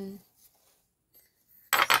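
Small terracotta tea-set pieces clinking against each other near the end: a quick cluster of sharp ceramic knocks after a stretch of near quiet.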